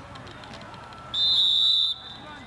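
Referee's whistle: one shrill, steady blast of under a second, starting about a second in and cutting off sharply, blowing the play dead after a tackle.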